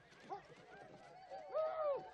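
A crowd of people shouting and calling out excitedly as they run, with horses moving among them; one long call, the loudest, near the end.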